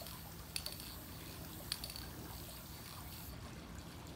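Aerosol can of Krylon Workable Fixatif spraying in a steady high hiss that cuts off near the end, with a few short ticks along the way.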